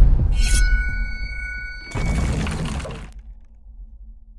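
Logo-sting sound design over an animated logo. A glassy, shattering shimmer with a few ringing tones opens it, a second deep hit comes about two seconds in, and a low rumble then fades away.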